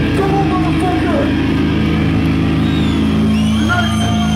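Amplified electric guitar and bass left ringing as a loud, steady distorted drone, as a metal song ends with the drums stopped. A voice comes over the PA, mostly in the second half.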